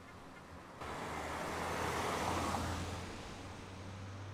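A rushing noise that starts abruptly about a second in, swells to a peak and fades again, like a road vehicle going past, over a steady low hum.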